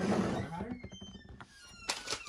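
A quiet, indistinct voice for about the first half second, fading to low room noise, with a light click near the end.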